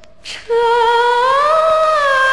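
Female voice singing a Mandarin folk tune on an old 1979 vinyl LP. After a short pause a long held note begins about half a second in, slides up in pitch and eases back down, over faint record surface noise.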